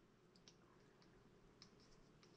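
Near silence with a few faint, short clicks scattered through, from a sculpting tool working oil-based modelling clay.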